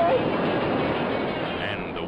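Wave crashing over a surfer's wipeout: a loud rush of white water that gradually fades.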